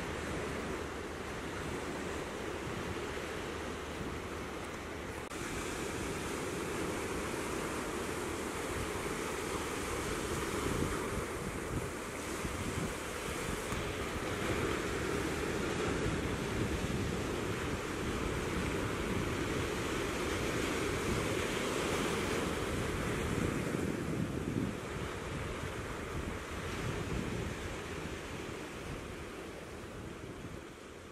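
Ocean surf breaking and washing over rock ledges: a continuous rushing that swells and eases, with wind rumbling on the microphone. It grows fainter near the end.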